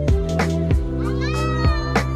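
Background music with held chords and a steady beat. About a second in, a high, wavering, voice-like call rises over it and is still going at the end.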